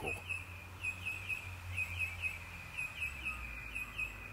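A bird chirping repeatedly in short, high notes, about three or four a second in loose clusters, over a low steady hum.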